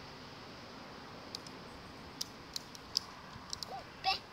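Shallow river flowing steadily over stones, with a scattered run of sharp clicks in the second half.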